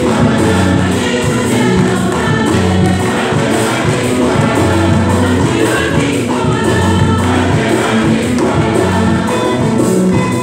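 A church choir singing a communion hymn with instrumental accompaniment and a steady percussion beat.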